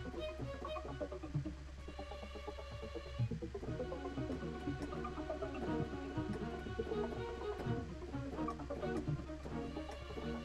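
Sampled orchestral strings playing back: short, repeated staccato string notes over a sustained tremolo string bed, looping a short phrase. A steady low hum runs underneath.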